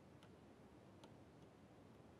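Near silence with a few faint ticks: a stylus tapping on a digital writing tablet as handwriting is written.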